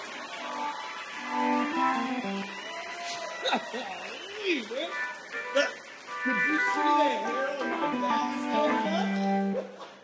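Live band guitars playing sustained notes with several sliding pitch glides, with no singing.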